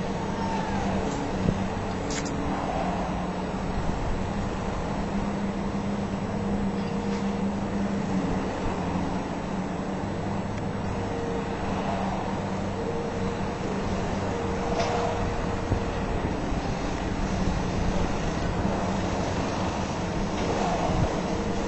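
Demolition site noise: a steady drone of heavy demolition machinery, with a wavering engine note, blended with city road traffic. A few sharp knocks of falling debris sound through it.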